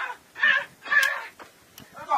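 A crow cawing three times, about half a second apart.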